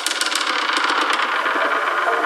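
A sparse passage of a neurofunk drum and bass mix: a gritty, machine-like synth texture of rapid clicking pulses over a buzz, the pulses thinning out after about a second, with no kick drum or deep bass.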